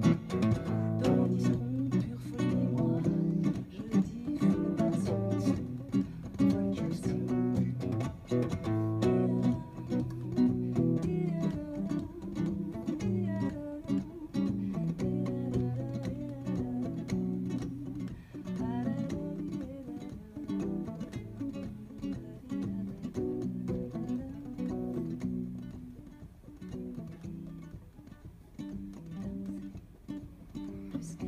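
Acoustic guitar playing a folk song live, strummed steadily; it grows softer in the last few seconds.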